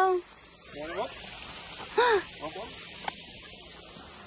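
Short wordless voice sounds: a brief one about a second in and a louder one that rises and falls about two seconds in, followed by a few small ones. A faint steady rush of a small garden waterfall runs underneath. A single sharp click comes just after three seconds.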